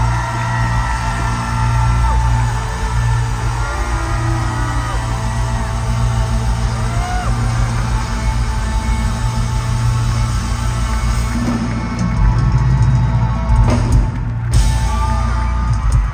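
A live pop-rock band playing through a concert PA, with heavy bass and a melody line over it. The music grows louder in the last few seconds, then drops off right at the end.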